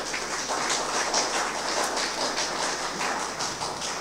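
Audience applauding, a steady patter of many hands clapping that fades near the end.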